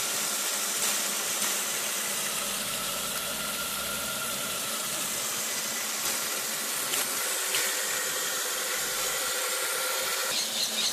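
Water jetting from a hose into a small homemade hydro-power model and spinning its turbine: a steady rushing hiss of spray, with a faint steady whine running under it.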